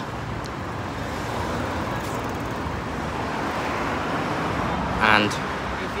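Road traffic running steadily along the street, a passing vehicle growing gently louder towards the end.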